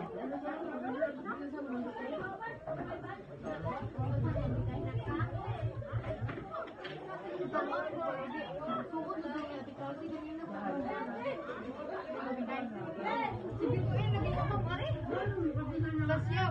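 Several people chattering at once, with no single voice standing out. A low steady hum comes in twice, about four seconds in and again near the end.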